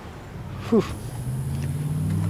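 A motor's steady low hum sets in about a second in and grows louder.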